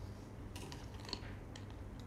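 Faint clicks and crackles of a plastic drink bottle's cap being twisted by hand, clustered in the first half, over a low steady hum.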